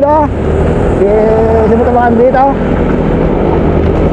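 Steady low wind rumble on the microphone of a camera riding along in a road-cycling group, with a man's voice talking over it in short phrases.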